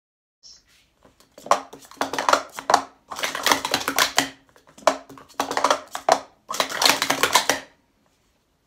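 Plastic sport-stacking cups being rapidly stacked up and down on a stacking mat: a quick clatter of light plastic cups knocking together and onto the mat, in about four bursts with short breaks between them.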